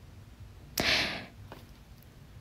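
A single short breath through the nose, a quick huff or sniff about a second in, over faint room noise.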